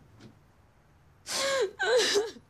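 A young woman sobbing: faint breathing, then two loud wailing sobs close together, each falling in pitch at its end, about a second and a half in.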